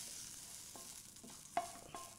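Cooked onion-tomato mixture being scraped out of a non-stick pan into a steel mixer-grinder jar, a soft faint scraping, followed near the end by two light, ringing knocks of metal on metal.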